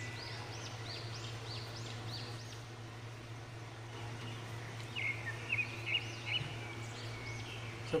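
Birds chirping: a quick run of high, rising-and-falling notes in the first few seconds, then a shorter burst of chirps about five seconds in, over a steady low hum.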